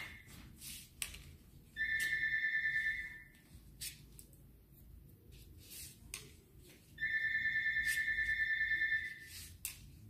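Hairdressing scissors snipping hair in a scattering of short, sharp clicks. A steady, high whistling tone with a fast flutter comes twice, louder than the snips: for about a second from two seconds in, and for about two seconds from seven seconds in.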